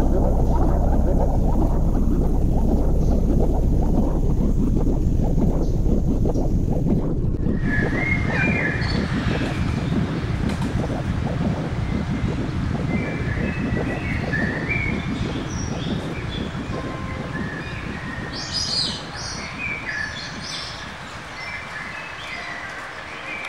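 For about seven seconds there is only a steady low rushing noise. Then birds start chirping and calling in short high phrases over it, and they keep going, livelier near the end.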